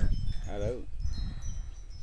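A pause in young children's choral recitation: one child's voice is heard briefly about half a second in. Faint, high, thin ringing tones sound throughout.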